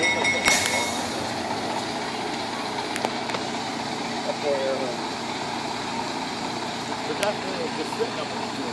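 Steam locomotive standing with steam hissing steadily. About half a second in comes a short, loud rush of steam, and a high steady tone stops just after it.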